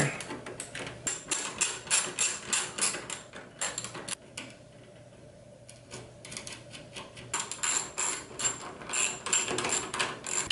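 Small socket ratchet wrench clicking in quick, even runs as mounting nuts are tightened on a panel ammeter, with a pause of about two seconds midway.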